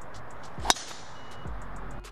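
A golf driver striking the ball off the tee: one sharp crack about two-thirds of a second in.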